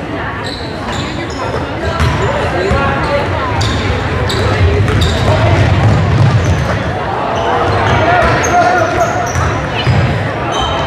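Basketball game on a hardwood gym floor: the ball bouncing, with sneakers squeaking in short high chirps, in an echoing gym full of spectators' voices.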